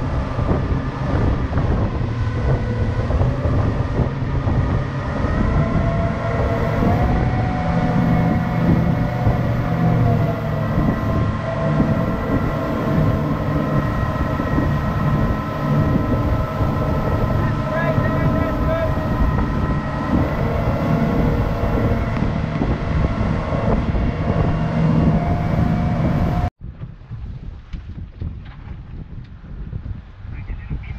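Three 300 hp outboard motors running at speed, a steady multi-tone engine whine that steps up slightly in pitch about seven seconds in, over wind on the microphone and rushing wake. Near the end it cuts off abruptly to a quieter wash of water and wind.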